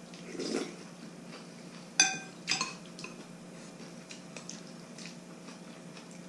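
Metal spoons and chopsticks clinking against bowls during a meal of noodle soup: a soft eating sound near the start, then one sharp ringing clink about two seconds in, the loudest sound, followed half a second later by a lighter one and a few small taps.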